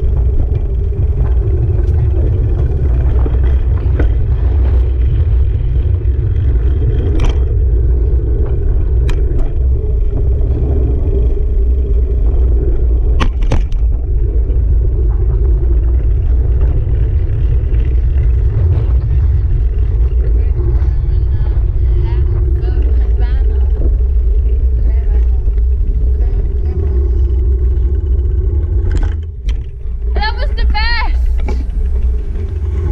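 Heavy, steady wind rumble buffeting the camera's microphone during a bike ride, mixed with road and tyre noise, with a few light clicks.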